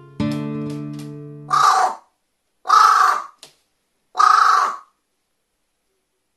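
Carrion crow giving three hoarse caws, each under a second long and about a second apart. Strummed acoustic-guitar background music fades out as the first caw begins.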